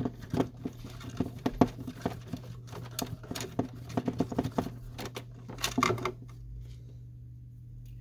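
Small screwdriver driving a screw into the printhead carriage of an Epson WorkForce WF-2650 inkjet printer. A quick, irregular run of light clicks and scratches from the tip and the screw turning, which stops about six seconds in.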